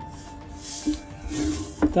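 Background music with steady held tones, with two brief hissing rustles as the wooden pyrography board is turned on the desk.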